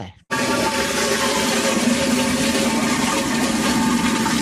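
A toilet flushing: a loud rush of water that starts suddenly and cuts off abruptly about four seconds later.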